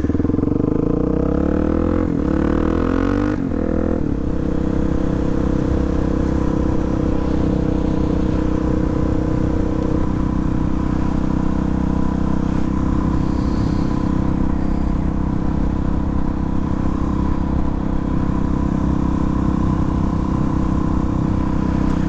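Suzuki DR-Z400SM's single-cylinder four-stroke engine pulling up through the revs for about three seconds, then a quick drop in pitch at a gear change. After that it runs steadily at cruising speed.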